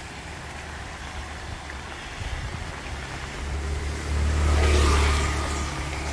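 A motor vehicle passes on a wet road: its low engine rumble and the hiss of tyres on the wet asphalt swell to a peak about four to five seconds in, then ease off.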